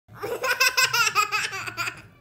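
A toddler girl laughing hard: a rapid run of high-pitched laugh pulses that fades out near the end.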